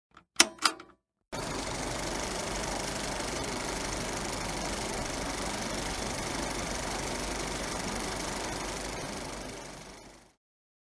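Film projector sound effect over a countdown leader: a steady mechanical running that starts about a second in and fades out at the end, after a couple of brief sharp sounds at the very start.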